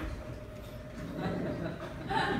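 Faint murmur of a live audience and room noise in a pause between lines, with a thin steady hum underneath; a little low chatter or chuckling rises in the second half.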